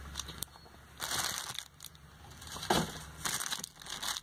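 Packing material crinkling and rustling in a cardboard box as it is handled, in a few short bursts.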